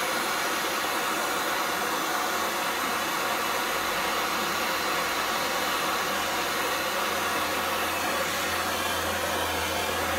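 MAP-gas torch burning with a steady hiss, its flame heating an aluminum tube for low-temperature aluminum rod brazing. A low hum grows louder near the end.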